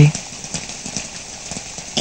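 Steady rain falling, with a horse's hooves clopping faintly.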